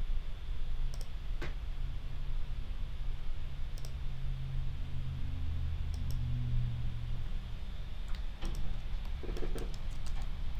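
Scattered clicks at a computer: a few isolated clicks, then a short run of them near the end, over a steady low hum.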